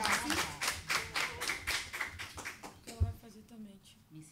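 A roomful of people applauding, the clapping thinning out and dying away over the first three seconds. A short low thump about three seconds in, then low voices.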